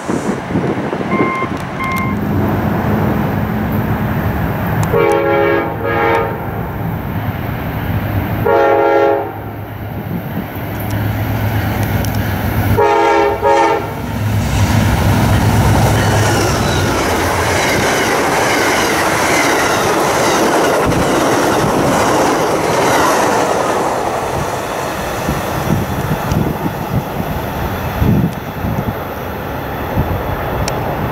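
Amtrak GE P42DC diesel locomotive sounding its horn three times as it approaches. Its engine and passenger cars then pass on the rails with steady running noise.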